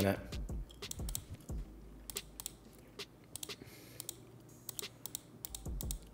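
Scattered, irregular clicks of a computer mouse and keyboard, fairly faint, with a couple of low thumps.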